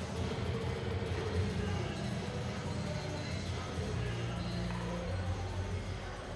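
Indistinct arena ambience: background music with held bass notes over a steady murmur of crowd chatter.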